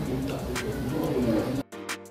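A woman humming a low, wavering closed-mouth "mmm" as she savours a spoonful of soup, over restaurant background noise. Near the end the room sound cuts off abruptly and violin music begins.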